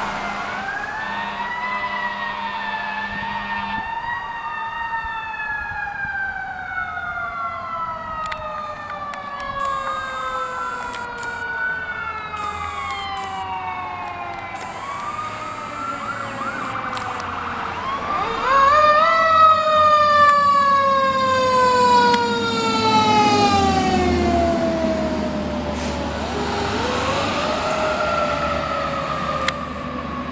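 Fire apparatus sirens wailing, several overlapping, each rising and then sliding slowly down in pitch. A much louder siren rises about 18 seconds in and falls away slowly as it comes close, over a low engine rumble.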